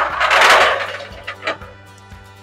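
Aluminum ramp sliding across a trailer's metal rail: a scrape of about a second that fades out, then a light knock. Background music plays throughout.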